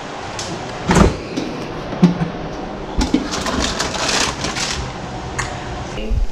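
Handling noises: thumps and knocks about a second apart, then a stretch of quick rustling and clicking.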